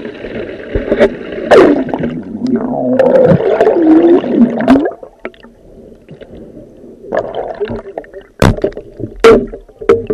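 Water gurgling as heard underwater, with tones sliding up and down through the first half. It goes quieter about halfway, then a few sharp clicks come near the end.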